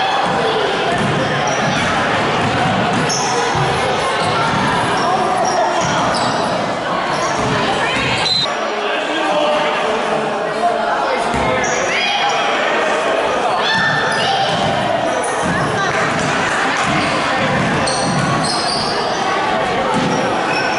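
A basketball bouncing on a gym floor as children dribble during a game, ringing in a large hall over a steady background of voices.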